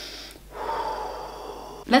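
A woman's short intake of breath followed by a long, breathy exasperated sigh lasting over a second.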